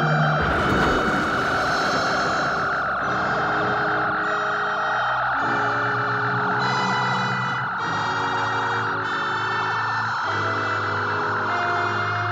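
Science-fiction laser-weapon sound effect: a steady, wavering high whine held throughout, with a burst of rushing hiss in the first couple of seconds as the beam fires. Under it, orchestral music moves through held chords about once a second.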